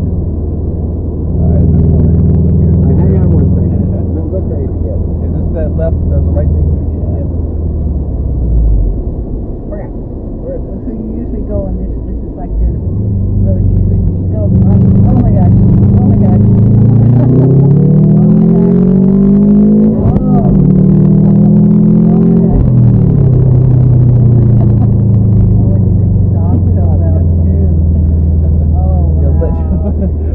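Subaru WRX's turbocharged flat-four engine heard from inside the cabin. It runs steadily for the first half, then accelerates hard, its pitch climbing with a brief break about two-thirds of the way in, then eases off and settles back to a steady run.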